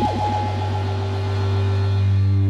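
The closing bars of a 1960s rock recording: electric guitars and bass hold a ringing chord over a loud, deep drone. Right at the start there is a quick downward swoop of several pitches.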